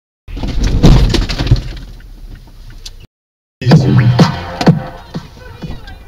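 Car collision: a sudden loud crunch of impact with breaking and cracking, fading over about two seconds. After a short silence near the middle, a second loud burst follows.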